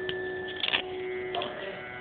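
Live Hindustani classical music of sarod and tabla over a steady drone, with a few sharp strikes, the loudest a little under a second in.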